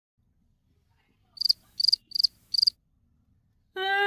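Cricket chirping: four short, high chirps in quick succession, about one and a half seconds in. A woman starts speaking just before the end.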